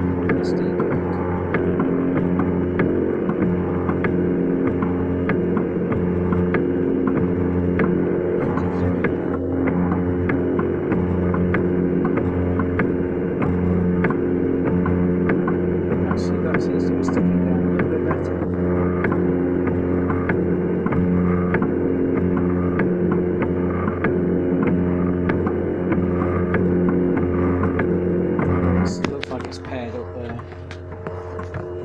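Velleman Vertex K8400 3D printer running a print: its stepper motors whine in several tones that change pitch every second or so as the print head moves, with a steady hum and light ticking underneath. The sound gets quieter near the end.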